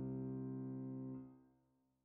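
Closing background music: a held piano chord slowly dying away, then fading out to silence about a second and a half in.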